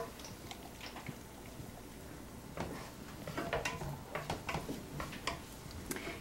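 Quiet stirring in a frying pan: a wooden spatula scraping and tapping against the pan, a few soft clicks and scrapes that come more often from about halfway through.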